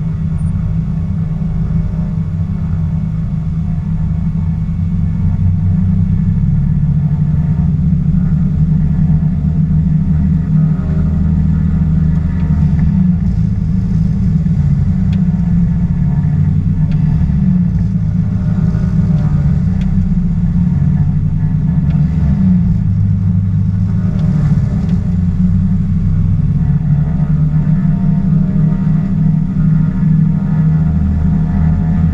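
Twin piston engines of an Aero Commander 500S Shrike heard from inside the cockpit during the pre-takeoff run-up, brought up to about 1500 RPM a few seconds in. The propellers are cycled, so the drone dips in pitch and recovers several times.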